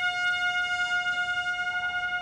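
A brass instrument of a military band holding one long, steady high note.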